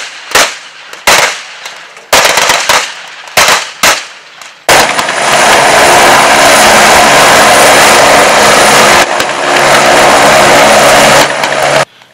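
A string of sharp gunshots, single and in quick pairs, over the first five seconds. Then the loud, steady noise of a helicopter hovering close by, with level engine tones running through it, which cuts off about eleven seconds in.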